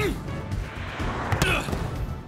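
A volleyball struck hard on a serve: one sharp smack at the start, followed by crowd noise and a short shouted voice, all over background music.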